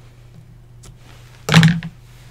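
Quiet handling of scissors and thread over a cutting mat, with one short thunk about one and a half seconds in, over a faint steady hum.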